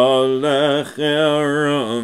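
A man's solo voice chanting Hebrew prayer liturgy without accompaniment, in long held notes that waver in pitch, with a short break for breath about a second in.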